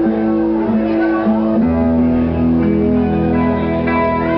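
Electric guitar played live on a rock stage, ringing out long held notes. A deeper bass line joins about one and a half seconds in.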